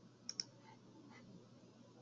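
Two sharp, quick clicks a tenth of a second apart, about a third of a second in, over a faint steady hum.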